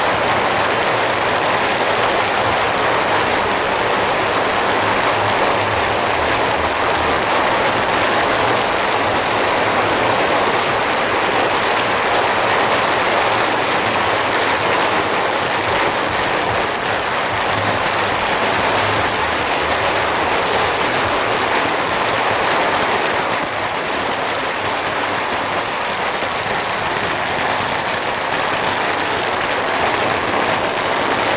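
Long strings of firecrackers going off on the street, an unbroken dense crackle of rapid bangs that eases slightly about two-thirds of the way through.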